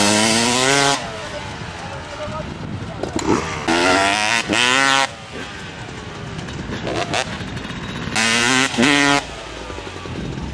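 Motocross dirt bike engine revving hard in three bursts, about four seconds apart, each rising in pitch, with the revs falling away in between as the rider launches off a freestyle ramp.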